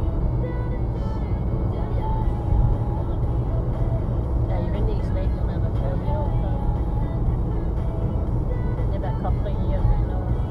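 Steady low road and engine rumble inside a car cruising at about 55 mph.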